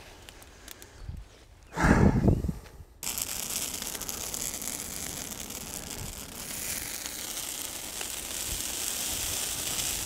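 Garden bonfire of brush and dried-out Christmas trees burning, giving a steady crackling hiss from about three seconds in. Before that, a brief loud rush of noise around two seconds in.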